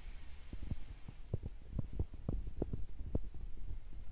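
Handling noise from a handheld camera being moved: irregular soft knocks and thumps, a few a second, over a low rumble.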